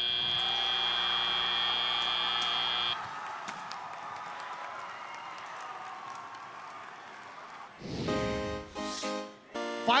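FRC field's end-of-match buzzer, one steady tone held for about three seconds, marking the end of the match. Then the arena crowd noise carries on more softly, and a short burst of music comes in near the end.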